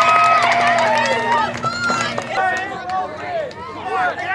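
Sideline spectators and players cheering and shouting after a goal; the cheering dies down about a second and a half in, leaving scattered voices calling out.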